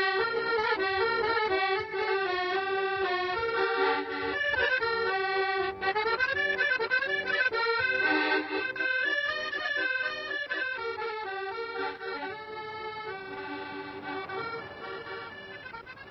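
Accordion playing a melody, growing quieter toward the end.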